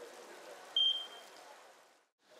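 A single short, high beep that fades out quickly, over faint background noise.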